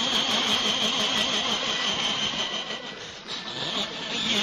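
A worn 1960 shellac 78 rpm record of a Korean trot song playing, its wavering vibrato melody line half buried under steady surface hiss and crackle.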